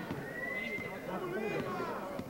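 Crowd and players' voices talking and calling out over one another at a basketball court, with one held high note lasting about a second near the start.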